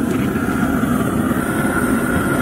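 Propane burner running under a steel tub of boiling water, a steady, even rushing noise.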